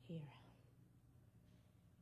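Near silence: room tone with a faint steady low hum, after a single spoken word at the start.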